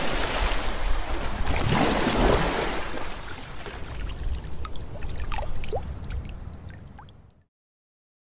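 Running, gurgling water, fading out gradually and cutting off abruptly about seven seconds in.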